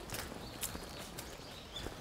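Faint footsteps of people walking on a path, an irregular patter of steps and scuffs, a few a second.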